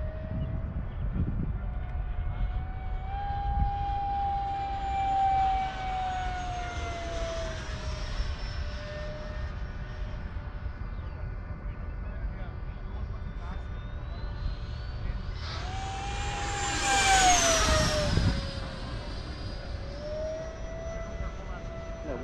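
Freewing L-39 model jet's electric ducted fan whining in flight, passing twice with its pitch rising as it comes in and dropping as it goes away. The second pass, about three-quarters of the way in, is the loudest and carries a high whistling tone. Wind rumbles on the microphone throughout. The owner can't tell whether the whistle is a fitted whistle or the motor failing, and thinks the fan sounds out of balance.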